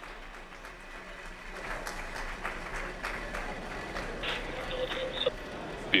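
A crowd applauding, a dense patter of many hands clapping, with a faint voice briefly heard near the end.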